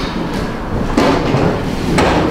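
A loud, even noise spread across all pitches with no tone in it, swelling slightly about a second in.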